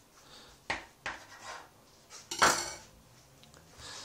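A kitchen knife clicking against the countertop as it cuts through a ball of dough, twice about a second in, then a louder clatter of the knife on the counter about two and a half seconds in.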